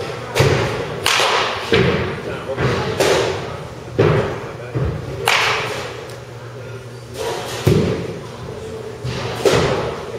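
Baseball batting practice in an indoor cage: repeated sharp impacts a second or two apart, from a bat striking pitched baseballs and balls hitting the netting, each ringing briefly in the large hall.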